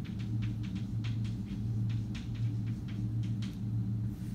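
Chalk clicking and scraping on a blackboard in short, irregular strokes, several a second, over a steady low hum.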